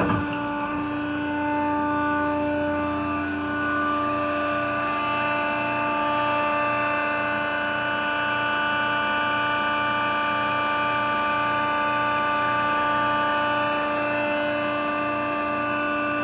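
Large industrial hydraulic machine running, its electric motor and pump giving a steady hum with a slow, regular low pulsing underneath.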